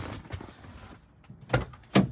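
Faint rustling, then two sharp knocks about half a second apart near the end, the second the louder: handling knocks inside a car's interior.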